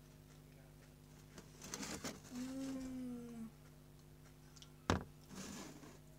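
A person chewing a crunchy homemade cookie, with a short hummed "mmm" of approval about two seconds in. A single sharp knock comes just before the five-second mark, followed by more chewing.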